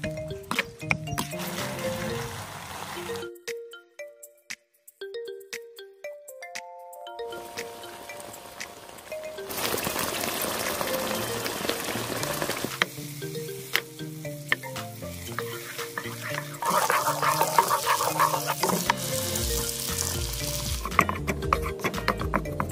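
Background music over a wok of minced-meat and tomato sauce sizzling as it is stirred; the sizzle comes up about halfway through and again near the end.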